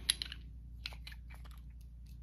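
Several small glass Maybelline Fit Me foundation bottles with plastic caps clicking and knocking against each other as they are handled, a quick irregular run of light clicks.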